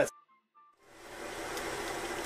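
Steady room hiss of the recording, fading in about a second in after an edit cut, with near silence and a few faint short tones before it.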